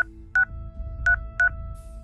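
Touch-tone (DTMF) keypad beeps from a smartphone as a calling-card PIN is keyed in during a call: four short beeps, two in the first half-second and two more a little after the one-second mark.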